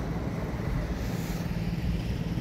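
Steady low rumble of outdoor background noise, typical of distant road traffic.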